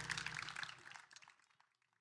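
Small audience applause, scattered claps fading out and gone about a second and a half in.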